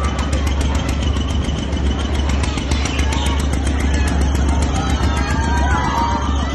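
A motor-driven fairground ride running, with a steady low mechanical drone and a fast, even ticking of about five a second. Voices rise over it near the end.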